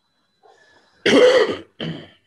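A person coughing twice: a longer cough about a second in and a shorter one near the end.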